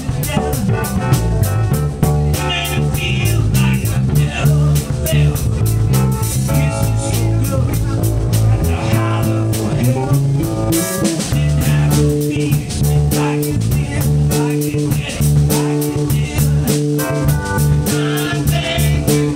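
Live soul band playing: electric bass carrying a strong bass line over a steady drum-kit beat, with keyboard.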